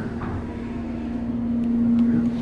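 Schindler hydraulic passenger elevator running as the car travels, heard from inside the cab: a steady hum at one pitch over a low rumble, growing a little louder near the end.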